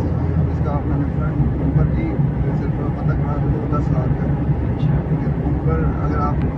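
Steady low road and engine drone inside the cabin of a moving Toyota Vitz 1.0 hatchback at cruising speed, with voices talking over it.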